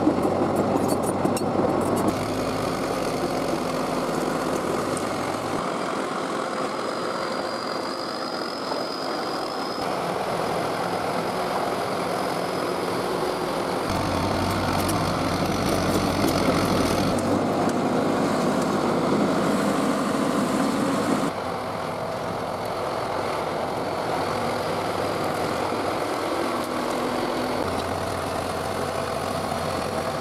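1976 John Deere 450-C crawler bulldozer's diesel engine running steadily as the machine works, pushing rock and earth along the road. The sound shifts abruptly in level and tone several times.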